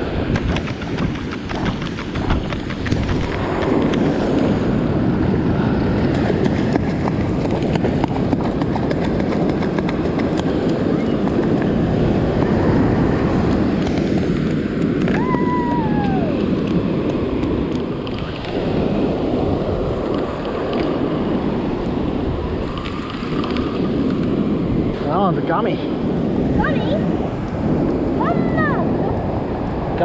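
Wind buffeting the microphone over breaking surf, a steady rough noise. A few short high falling calls cut through around the middle and again near the end.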